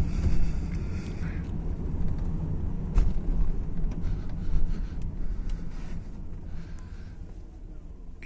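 Car driving slowly, heard from inside the cabin: a steady low rumble of engine and road noise, with a higher hiss during the first second and a half and a few light clicks.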